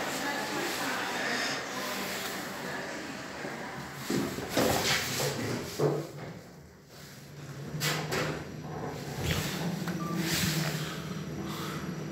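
Kone EcoDisc lift: the car doors slide shut with a few clunks, then the car starts travelling up with a steady low hum from the gearless drive.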